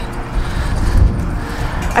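Wind buffeting the camera's microphone: a loud, gusting low rumble that peaks about a second in.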